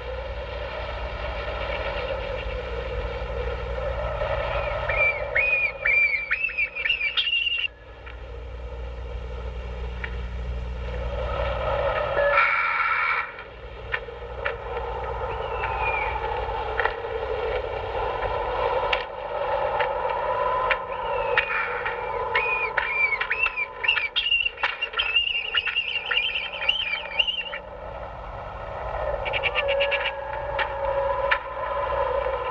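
Eerie electronic horror-film score: a wavering drone with warbling, sliding high tones that come in twice, a few seconds in and again past the middle.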